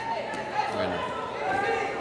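Men's voices talking and calling out in an arena hall, with some background chatter.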